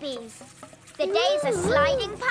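Faint crackling hiss, then about a second in a cartoon character's wordless voice: one wavering note that dips and rises in pitch.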